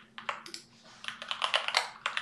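Typing on a computer keyboard: a quick, uneven run of keystrokes that grows busier about a second in.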